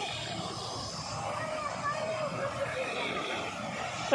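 Faint voices of people talking at a distance over a steady background noise.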